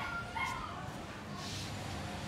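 Domestic cat giving a short high mew near the start, its pitch gliding.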